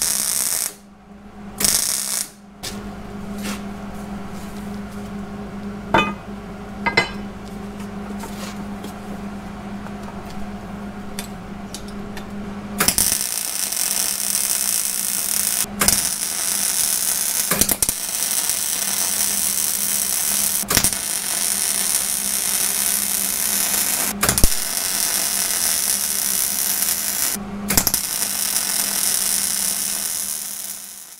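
Welding arc laying weld onto a worn mild steel shaft to build up the metal: short bursts at first over a steady hum, then, a little before halfway, a loud continuous crackling hiss broken by a few brief stops.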